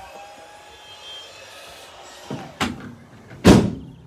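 Rear door of a Ford Transit Custom van being closed: a couple of lighter clunks, then a loud slam about three and a half seconds in.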